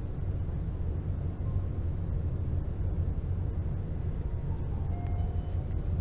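Steady low rumble of room background noise, like a ventilation system running, with no other clear event.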